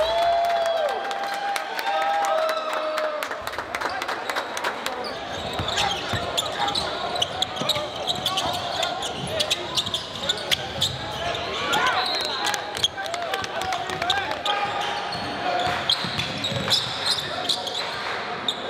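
Basketball being dribbled and bouncing on a hardwood gym floor, many short sharp bounces, over echoing voices of players and spectators in the hall.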